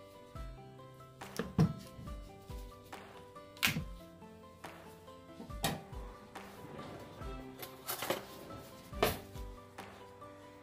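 Background music with steady melodic notes, over which come several sharp knocks at uneven spacing: a knife splitting a butternut squash and striking a wooden cutting board.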